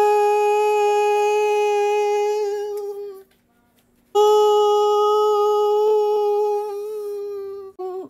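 A voice singing two long held 'ahh' notes at the same steady pitch. The first breaks off about three seconds in, and the second starts a second later and tails off near the end.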